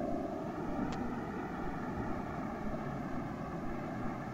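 Steady background hum and hiss of the recording during a pause in speech, with a few faint steady tones and one faint click about a second in.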